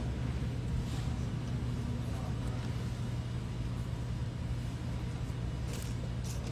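Steady low hum over faint background noise, with a couple of faint brief sounds about a second in and near the end.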